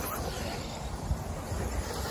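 Electric radio-controlled 4WD buggies running on a grass race track: a steady hiss of motors and tyres over an irregular low rumble.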